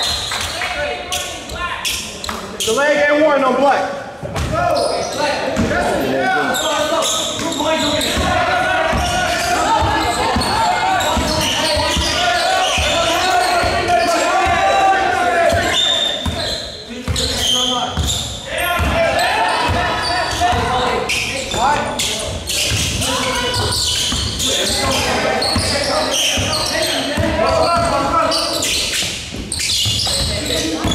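A basketball game in a gym: the ball bouncing on the court amid many short knocks, with players and spectators shouting and talking throughout, echoing in a large hall.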